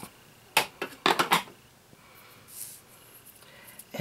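Light clicks and taps of stamping supplies being handled and set down on the work surface: one click about half a second in, then a quick cluster of three or four about a second in, followed by a faint soft brush of card stock.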